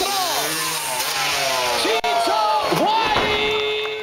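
Dirt bike engine revving, its pitch rising and falling again and again as the throttle is blipped, then holding a steadier note near the end. A brief dropout comes about two seconds in.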